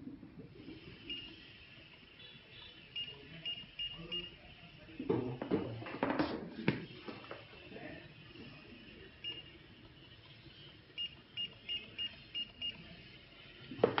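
Datalogic QuickScan QW2100-series handheld barcode scanner giving short, high good-read beeps as it reads book barcodes: one about a second in, a quick run of several around three to four seconds, one near nine seconds, then six in quick succession about a third of a second apart near the end. Each beep marks a successful scan. Handling noise of the book and scanner comes between about five and seven seconds.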